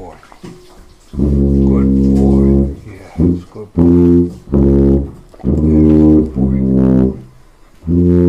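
Sousaphone played in its low register: one long held note starting about a second in, then a run of shorter notes separated by brief gaps, trailing off near the end.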